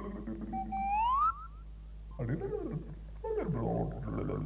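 Clangers-style whistled character sounds. A rising slide-whistle glide about half a second in is Clanger whistle-speech. Two short, lower warbling calls that bend up and down follow in the second half.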